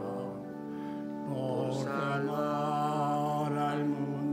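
A hymn: a sung voice over steady, held accompaniment chords. The voice comes in about a second in.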